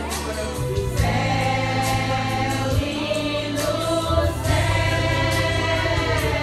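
A mostly women's church choir singing a hymn together in held, sustained notes over a low bass accompaniment whose notes change twice.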